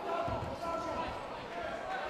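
Shouting voices in a large hall, with dull low thuds about half a second in from MMA fighters grappling in a clinch against the cage.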